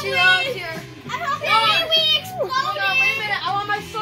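Young boys' excited voices, loud vocalizing without clear words, the pitch swooping up and down.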